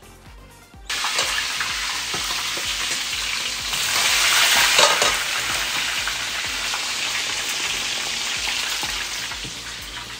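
Food frying in a pan of hot oil: a steady sizzle that starts suddenly about a second in, swells a little around the middle and eases off toward the end.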